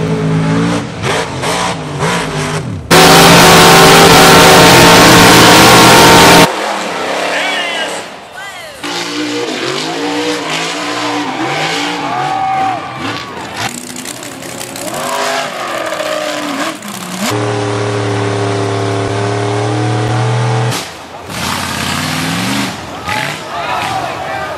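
Off-road mud trucks and a buggy, heard in a series of cut clips: engines revving up and down under hard throttle, with people shouting. A few seconds in, one engine runs flat out close by, loud enough to overload the sound. Later an engine holds a steady high rev for a few seconds.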